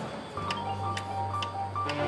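Quiet passage of marching band music: soft sustained notes from the front ensemble over a low held tone, with a steady ticking about twice a second.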